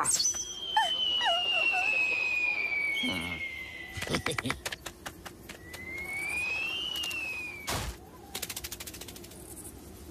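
Cartoon sound effects: a long whistle that slides slowly down in pitch for about five seconds, then climbs again, cut off by a heavy thump about eight seconds in. Short squeaky cartoon vocal noises come near the start, and a quick run of light taps comes near the end.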